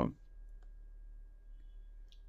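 A pause in a man's speech: quiet room tone with a steady low electrical hum and one faint click about half a second in. The tail of his last word is heard at the very start.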